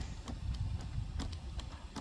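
Unitree Go2 quadruped robot walking on concrete: a few faint taps from its feet over a low rumble.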